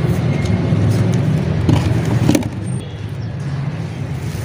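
Dry red dirt crumbling into a metal basin, with a couple of sharp crunches near the middle, over a steady low rumble.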